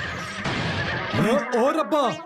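A noisy rumble for about the first second, then a cartoon horse whinnying, its pitch bouncing up and down rapidly, near the end.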